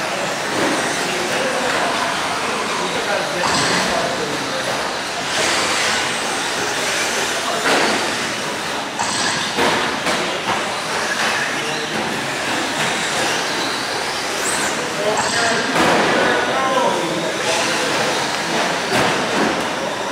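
Radio-controlled short-course trucks racing on a dirt track: a steady din of motor whine and tyre noise, with brief high whines that rise and fall as trucks accelerate and brake.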